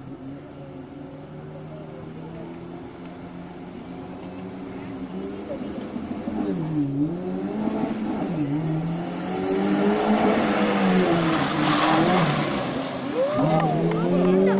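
Maruti Suzuki Gypsy rally car engine approaching at speed and growing louder. Its note drops and climbs twice, about seven and eight and a half seconds in, as the driver lifts and shifts. It peaks loud with a rush of tyre noise as it passes about ten to twelve seconds in.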